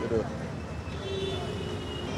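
Street background noise with traffic, between bouts of speech, with a faint steady tone in the second half.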